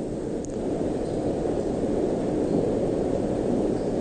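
Steady low rushing noise with no speech: the background noise floor of an old sermon recording in a large hall, hiss and room rumble.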